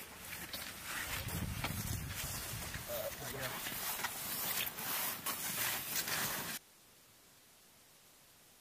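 Cross-country skis sliding and scraping over snow, with ski poles planting: a steady scraping hiss broken by many short, sharp strokes. It cuts off suddenly about six and a half seconds in, leaving only a faint background.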